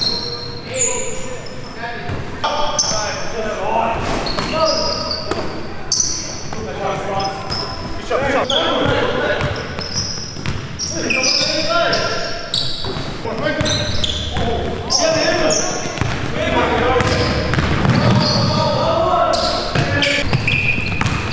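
Indoor basketball game: a basketball bouncing on the gym floor, with players' voices calling out on the court.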